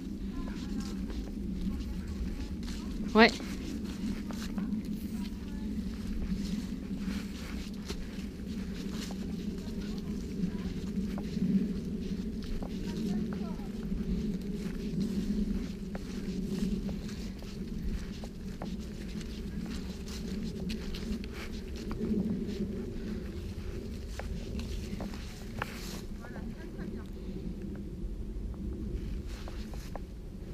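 Footsteps of a person and a dog walking on a leaf-strewn dirt path, with the steady rustle and handling noise of a camera carried along. One sharp knock comes about three seconds in.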